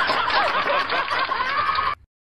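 Laughter: a continuous run of snickering and chuckling that cuts off abruptly near the end.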